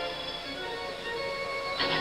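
Music with steady, held tones, between stretches of play commentary.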